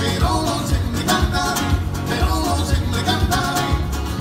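Gypsy band of several acoustic guitars strumming a fast, driving rhythm, with a man singing the lead vocal over it.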